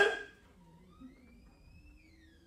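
Pause in a man's preaching: his voice dies away at the start, then near silence with a faint tone that slowly rises in pitch.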